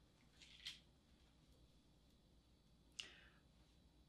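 Near silence with faint handling of Montessori bead bars: a soft rattle as a bar is picked from its wooden box just after half a second in, and a single light click about three seconds in.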